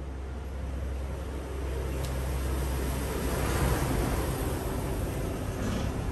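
A passing motor vehicle: a low engine rumble with rushing road noise that swells to a peak about midway and then fades.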